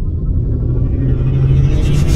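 Logo-intro sound effect: a deep, loud rumble with a steady low hum in it, slowly building in loudness, with brighter high sounds coming in near the end as it swells toward a hit.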